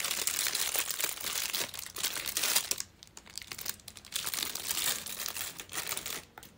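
Packaging crinkling and rustling as it is handled, in stretches with short pauses about three and four seconds in.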